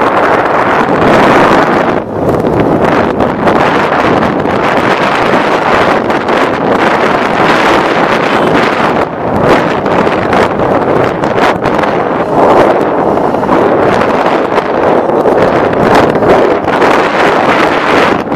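Loud, unsteady wind rushing over the microphone of a camera riding in a moving vehicle, with vehicle noise beneath it.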